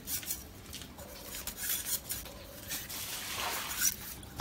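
Knife blades splitting and shaving bamboo into skewers: faint scraping strokes and light clicks of steel on bamboo.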